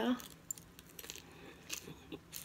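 Close-up chewing of a mouthful of crisp romaine lettuce salad: faint, scattered crunches and small sharp clicks, a couple about half a second in and a few more near the end.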